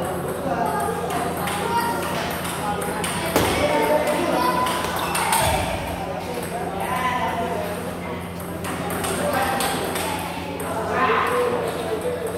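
Table tennis rally: the ball clicks repeatedly off paddles and the table in quick exchanges. People's voices run underneath, along with a steady low hum.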